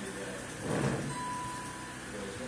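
A brief noisy burst just under a second in, then one steady high note from an electronic keyboard, held for about a second.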